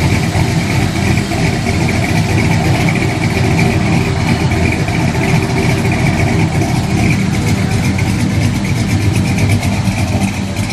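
Ford 3.0 L Vulcan V6 idling steadily, its accessory belt running on newly fitted Jet underdrive pulleys with a shorter belt.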